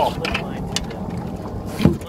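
A hooked redfish thrashing and splashing at the surface beside a small boat, a few short splashes with the loudest near the end, over steady wind noise on the microphone.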